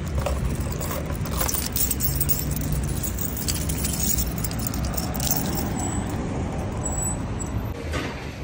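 A bunch of keys jangling and clicking as it is handled at a bicycle with a cable lock, over a steady low rumble.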